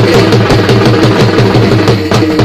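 Loud Indian devotional music with a fast, steady drum beat under held melodic notes.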